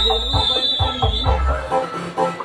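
A single long, steady, high-pitched whistle blast, typical of a referee's whistle, fading out about a second and a half in over crowd voices.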